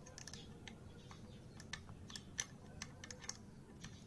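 Light metallic clicks, about a dozen at uneven intervals, from a small screwdriver working the screw in the centre of a Bolex H16 Reflex's frame-rate dial.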